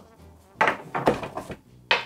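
Wooden chess pieces and their wooden box knocking on a desk as the set is handled: three short knocks, the sharpest near the end.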